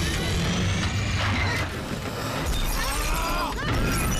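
Film crash sound effects as a plane's cabin is thrown about: continuous crashing, crunching metal and shattering glass, with the orchestral score underneath.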